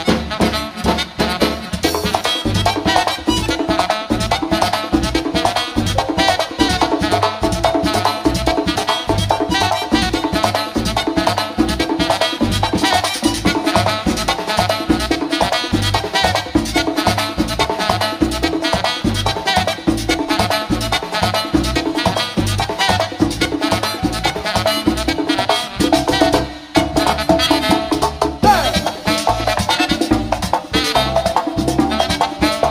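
Live merengue típico band playing an instrumental stretch: button accordion over tambora, congas, saxophone and electric bass, with a steady fast beat. The band briefly drops back a few seconds before the end.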